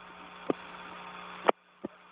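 Open radio voice link with no one talking: steady hum and static hiss, a click about half a second in and a louder click at about a second and a half, after which the hiss cuts off, then one more faint click.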